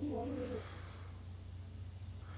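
A brief low, hum-like voice sound in the first half second, then only a faint steady low hum.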